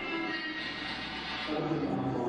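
Live band of men singing together into microphones to a strummed banjo.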